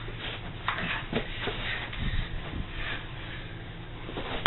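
Faint shuffling of people moving about on a carpeted floor in socks, with a few soft knocks, over a low steady hum.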